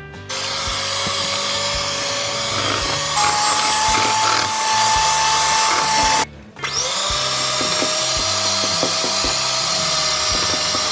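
Electric hand mixer whirring as its twin beaters whisk waffle batter in a stainless steel bowl. About three seconds in, it switches to a higher speed and its whine rises; just past six seconds it cuts out for a moment, then starts again at a lower speed.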